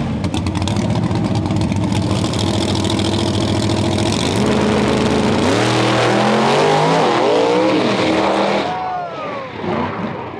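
Small-tire drag race car's engine revving loud and steady on the starting line, then launching at full throttle, the engine note rising and stepping up through the gears. Near the end the sound drops off sharply as the car loses control, followed by a brief wavering squeal.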